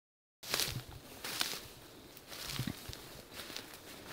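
Footsteps and the rustle and crackle of dry, brown bracken ferns brushed aside while walking through them. The sound starts suddenly about half a second in and goes on as irregular crunches.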